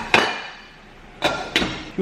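Glass lid being set onto a metal saucepan: a sharp clink with a short ring just after the start, and a second clink about a second later.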